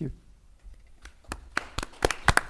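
Audience applause beginning: a few scattered hand claps about a second in, becoming more frequent toward the end.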